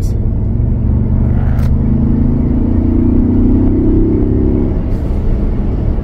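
2024 Ford Bronco's turbocharged engine accelerating, heard from inside the cabin over road rumble. The engine note climbs from about a second in and drops away shortly before the five-second mark.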